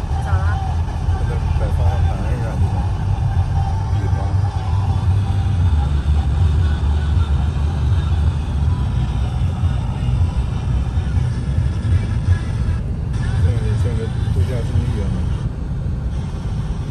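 Steady low rumble of a car's engine and tyres heard from inside the cabin while it drives slowly along a street.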